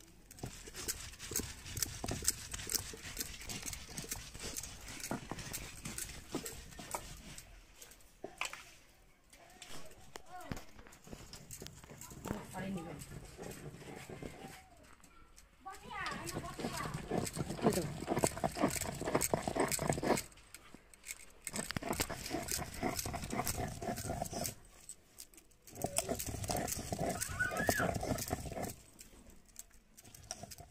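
Stone roller rubbed back and forth over a wet flat grinding stone (sil-batta) in repeated scraping strokes, grinding wet spice paste.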